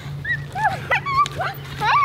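Young girls' short, high-pitched squeals and exclamations, several quick calls in a row, over a steady low hum.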